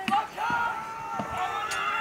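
Several men shouting in drawn-out yells as they charge, with a few faint thuds of running feet on grass.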